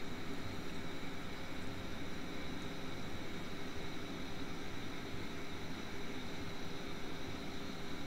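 Steady background hum and hiss of room noise picked up by the narrator's microphone, with no distinct events.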